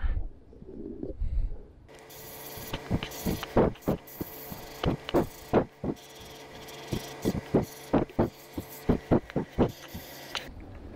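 An Iwata Eclipse HP-CS airbrush spraying paint, starting about two seconds in: a steady air hiss with a low hum under it, broken by a run of short, loud bursts a few times a second as the trigger is worked.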